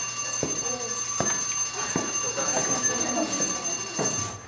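A bell ringing steadily, with several fixed high tones held together, stopping near the end.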